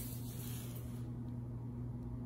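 A steady low hum with a faint hiss, with no distinct handling sounds standing out.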